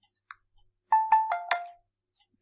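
An electronic notification chime: four quick ringing notes, two higher then two lower, after a faint click.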